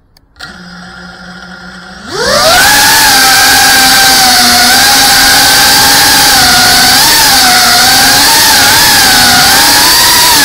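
Motors of a GEPRC CineLog 35 cinewhoop FPV quadcopter. They start with a low idle hum about half a second in, spool up sharply with a rising whine at about two seconds as it takes off, then hold a loud, steady high whine that wavers up and down with the throttle.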